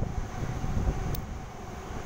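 Sydney Trains Waratah double-deck electric train running out of the station, a low steady rumble that fades a little as it moves away, with one brief high tick about a second in.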